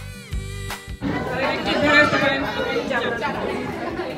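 A brief musical transition sting in the first second, then many people chattering together in a large hall.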